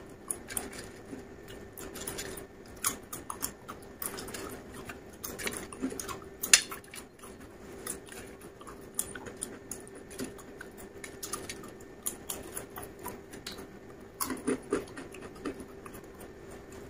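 Potato chips crunching as they are chewed close to the mouth, in many short irregular crackles, with chips rustling on a steel plate as they are picked up. A faint steady hum runs underneath.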